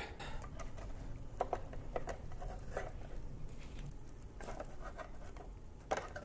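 Faint, scattered light scrapes and taps of a spatula working a toasted sandwich loose from the nonstick plates of a Gotham Steel sandwich maker and lifting it out.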